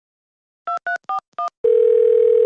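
Four quick touch-tone keypad beeps, each a two-note chord, as a phone number is dialled, then near the end a loud, steady single-pitch telephone tone.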